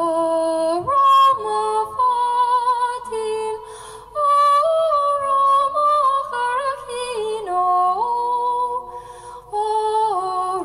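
A woman singing a traditional Irish-language rowing song unaccompanied, in long held notes with a slow vibrato. She breaks for breath a little over three seconds in and again near the end.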